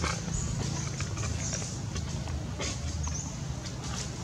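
A baby long-tailed macaque giving several short, high squeaks, over a steady low rumble of distant traffic.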